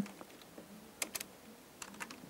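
Computer keyboard keystrokes typing code: a quick cluster of about three clicks about a second in, then another couple of clicks near the end.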